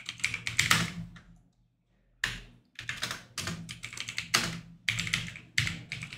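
Computer keyboard typing: quick, irregular key clicks, with a pause of under a second at about a second and a half in before the typing resumes.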